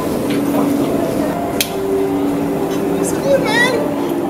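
People talking casually over a steady low hum, with a sharp click about one and a half seconds in.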